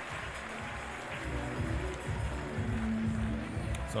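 Music with a low, pulsing beat that grows stronger about a second in, over the general noise of a stadium crowd.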